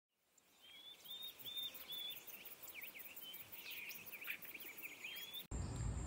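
Several birds singing and calling in woodland: short chirps and whistled notes over a very high, faint ticking that repeats about four times a second. Near the end it cuts suddenly to a steady low rumble with a constant high insect trill.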